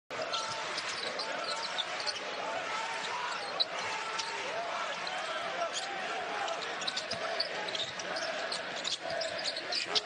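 A basketball being dribbled on a hardwood arena court under a steady murmur of crowd voices.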